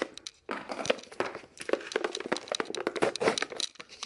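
Crinkling and crackling as a snack canister is opened and its foil seal peeled back: a dense, irregular run of small clicks that starts about half a second in.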